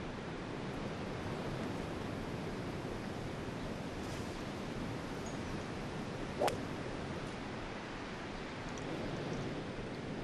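A golf ball struck with a fairway wood: one sharp crack about six and a half seconds in, over a steady hiss of wind.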